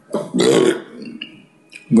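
A man's short, throaty vocal sound, then a brief pause before his voice resumes near the end.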